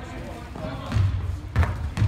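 A basketball bouncing on a hardwood gym floor, with one sharp bounce about a second and a half in.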